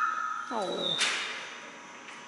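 A high held vocal call, then a short cry sliding steeply down in pitch, followed by a single sharp knock about a second in.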